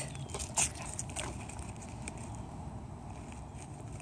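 Quiet outdoor background noise, steady and low, with a few faint clicks in the first second or so.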